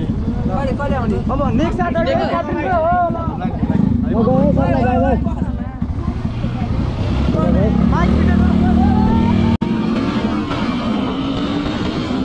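Yamaha motorcycle engine running under people talking, then pulling away with its pitch slowly rising as it gathers speed. The sound breaks off for an instant a little past the middle.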